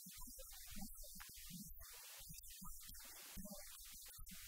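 Faint low hum with weak, irregular low throbbing, close to silence.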